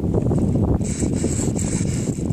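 Wind buffeting the microphone, a steady low rumble, with a brief hiss joining about a second in.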